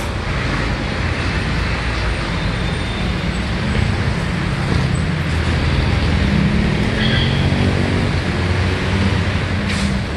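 Street traffic with a heavy vehicle's engine running close by, getting somewhat louder in the second half.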